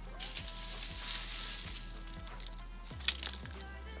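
Dry leaves and grass crackling and rustling as a handful is grabbed, strongest in the first half, over background music with a steady beat.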